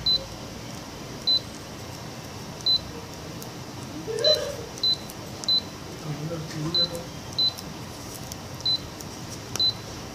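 Canon imageRUNNER ADVANCE C2220i touch panel beeping once for each key press as a stylus types on its on-screen keyboard: about ten short, high beeps at uneven intervals.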